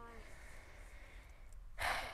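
A faint, quiet pause followed near the end by a short breathy exhale, like a sigh.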